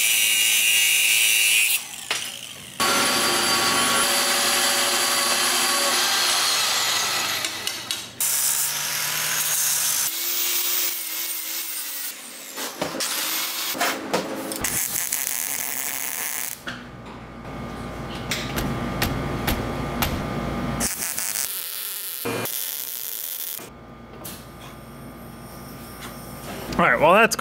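Angle grinder cutting steel on a car seat frame, in several long passes with short pauses, its wheel giving a steady high whine under the grinding. Later comes several seconds of crackling from welding.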